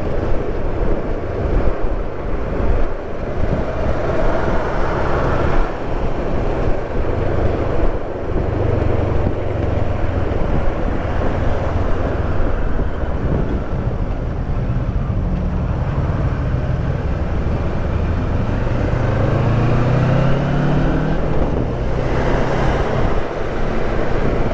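Kawasaki Versys 650 parallel-twin engine running at road speed under wind noise on the microphone. Late on, the engine note climbs as the bike accelerates.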